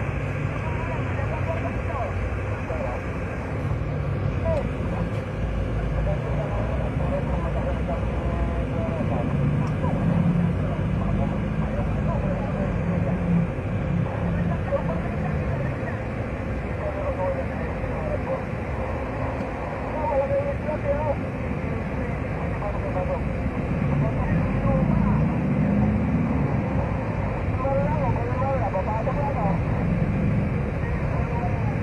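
Cabin noise inside a moving passenger van: a steady engine and road rumble, with faint indistinct voices under it.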